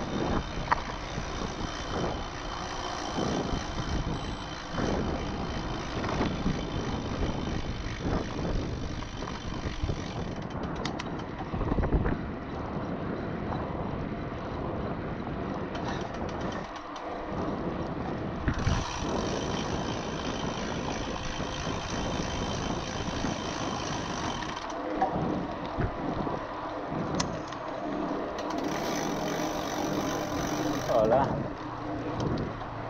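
Wind rushing over the camera microphone with the rolling noise of a mountain bike's tyres on a rough lane, broken by frequent short knocks and rattles over bumps.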